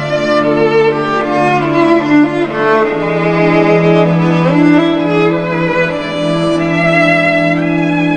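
Orchestral string section playing a slow, sustained instrumental passage: a bowed violin melody over held low notes, with a note sliding upward about halfway through.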